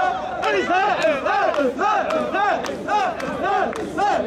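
Mikoshi bearers chanting together: a group of men shouting short calls in unison in a quick, steady rhythm, a little over two calls a second, with a few sharp clicks among them.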